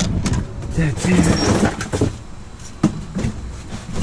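Rummaging through dumpster contents: hard knocks of objects being set down and moved, with a dense rustle of cardboard and plastic about a second in, and a short grunt-like voice sound among it.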